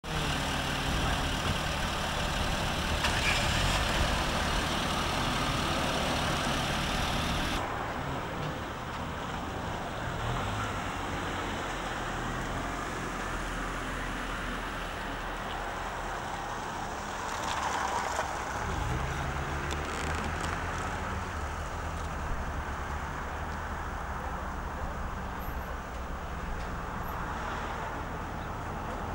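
Steady car engine and road traffic noise, with an abrupt change in the sound about eight seconds in and a swell around eighteen seconds.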